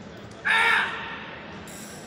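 A single short, harsh human shout, about half a second in, over the steady din of a crowded sports hall. It falls amid kempo bouts at the mat side, where it fits a competitor's kiai or a teammate's yell of support.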